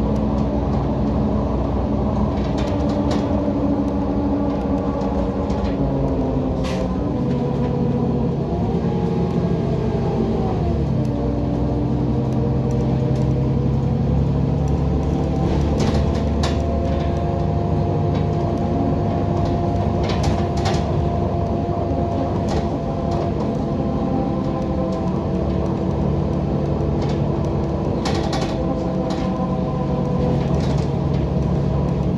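Heuliez GX127 midibus heard from on board: its diesel engine and drivetrain run steadily, the pitch dropping and then climbing again about eight to eleven seconds in as the bus slows and pulls away. Short rattles and clicks come now and then, and a thin steady whine runs through the second half.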